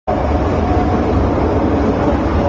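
Steady rumble of a metro train running, heard from inside the carriage, with a faint steady hum over it.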